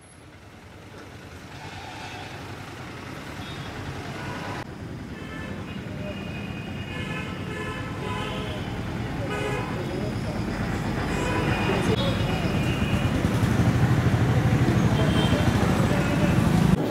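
Road traffic with vehicle horns tooting and people's voices, fading in and growing steadily louder.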